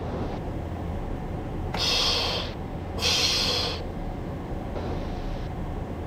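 Breaths on a headset microphone: two hissing exhales about a second apart and a fainter one near the end, over a steady low hum.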